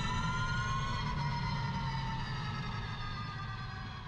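Onboard sound of a self-driving electric race car at speed: a high, many-toned electric drivetrain whine, its pitch drifting slightly lower, over low road and wind rumble, fading out gradually.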